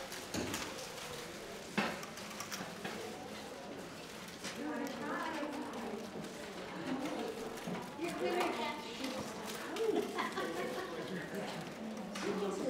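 Indistinct chatter of several people in a large room, with a few sharp clicks near the start, the loudest about two seconds in.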